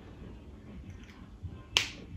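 Quiet room, then a single sharp click near the end: a plastic highlighter cap being snapped on.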